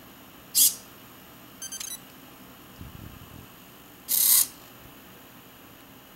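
Sony U30 compact digital camera on an Arduino servo panning mount taking panorama shots. A short hiss-like shutter sound comes about half a second in and a beep near two seconds. A faint low rumble of the servo turning the camera follows, then a louder shutter sound a little after four seconds.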